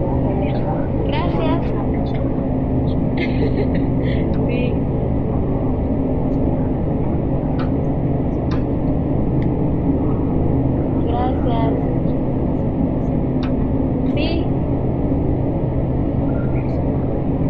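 A steady low rumble with hum, and faint wavering voices in the background now and then.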